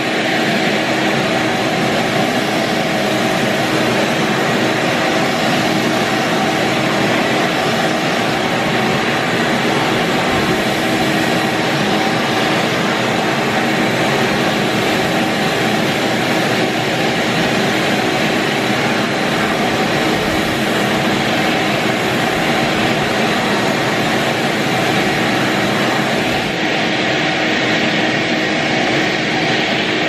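Ridgid Pro Pack 4.5-gallon wet/dry shop vac running steadily and loudly, its floor nozzle sucking up sawdust and roofing nails from a concrete floor.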